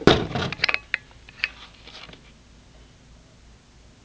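Handling noise: a few light clicks and knocks in the first second and a half as a plastic action figure is moved about close to the microphone, then quiet room tone.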